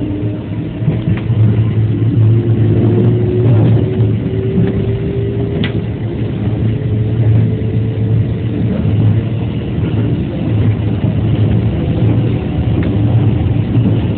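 JR West 207 series electric train heard from inside the front car: a constant running rumble with the traction motor whine rising steadily in pitch as the train accelerates, fading out about nine seconds in.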